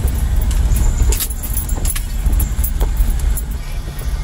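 A car's low engine and road rumble heard inside the cabin as it drives slowly over a rocky dirt track, with frequent rattles and clicks from the jolting car.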